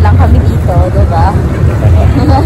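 Low, steady rumble of traffic on a busy city street, with people's voices over it.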